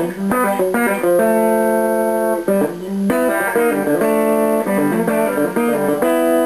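Fender Telecaster electric guitar playing a country lick with hybrid pick-and-fingers picking: quick pull-offs on third intervals. The quick notes are broken by a couple of held double-stops, about a second in and again about four seconds in.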